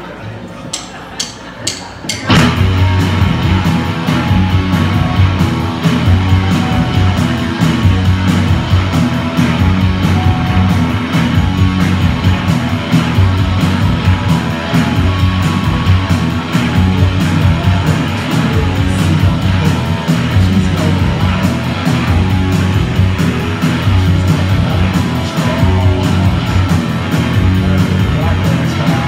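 Rock band playing live on two electric guitars, bass guitar and drums. After a few sharp clicks, the full band comes in loud and all together about two seconds in and keeps a steady driving beat.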